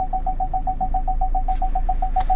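Ford Focus parking-sensor warning beeping in a fast, even series of short tones at one pitch, about five a second, with a low steady hum of the running car beneath. The fast rate signals that the car is close to the obstacle at the end of the parking manoeuvre.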